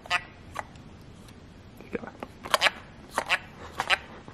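Plastic paintball grenade being worked by hand: a scatter of short, sharp plastic clicks as it is twisted and pressed, without going off. It is believed to be broken.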